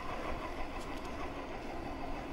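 Steady riding noise of an e-bike rolling along an asphalt street: an even rush of tyre and air noise.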